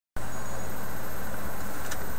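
Steady hiss with a low hum underneath, starting abruptly a moment in, with a faint tick near the end.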